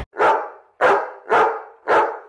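A dog barking four times, each bark short and sharp.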